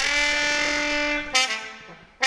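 A brass instrument holding one long, steady note for about a second, then a shorter, lower note that fades away.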